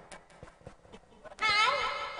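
A few faint clicks, then about one and a half seconds in a short, loud, high-pitched voice call that wavers in pitch.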